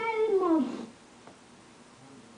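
A young boy's voice holding one long, drawn-out syllable whose pitch slides downward, ending about a second in.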